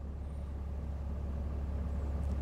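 Pickup truck engine idling, a steady low hum heard from inside the cab.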